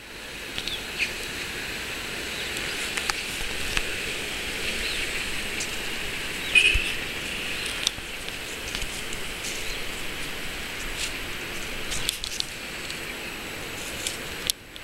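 Outdoor park ambience: a steady high-pitched hiss with scattered small clicks, and a brief chirp about six and a half seconds in.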